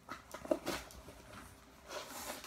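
Cardboard box and record mailers rustling and scraping as records are handled and lifted out of the shipping box: a few short scrapes in the first second, then quieter handling.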